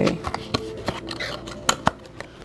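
Tarot cards and their box being handled: a few sharp clicks and taps, the two loudest close together near the end, over soft background music.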